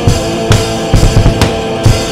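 Black/death metal band music: a drum kit playing regular bass-drum and snare hits under sustained instruments.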